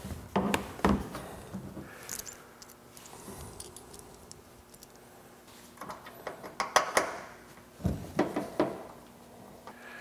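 Handling noise from fitting a plastic mud flap by hand: scattered clicks and taps of the flap against the wheel well and of small mounting screws in the hand. There is a quieter stretch in the middle.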